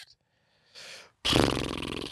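A man draws a short breath, then blows air out through his lips in a loud, buzzing exhale for about half a second, a thinking sound before answering.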